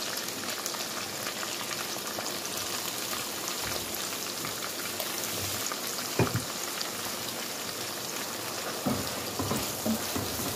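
Smoked guinea fowl frying in palm oil in a non-stick pan, a steady sizzle. There is a short loud thud about six seconds in, and a few knocks near the end as a silicone spatula stirs in the blended onion, pepper and spring onion paste.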